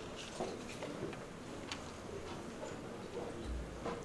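Quiet hall room tone with a few faint scattered clicks and rustles, and a soft low thump near the end.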